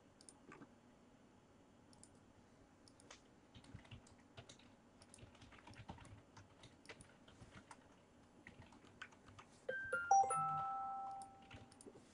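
Faint, scattered computer keyboard and mouse clicks. About ten seconds in, a short electronic chime of a few notes rings out and fades over about a second, like a computer notification alert.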